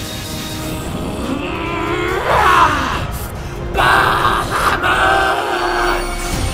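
Dramatic background music with a long drawn-out cry that rises and then falls in pitch about two seconds in, followed by a second held cry near the end.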